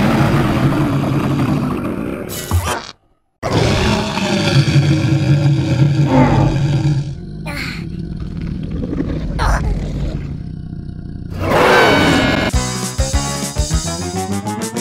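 Loud cartoon monster roars and growls layered with dramatic score, breaking off for a moment about three seconds in and swelling again just before the end. Near the end it gives way to light keyboard music.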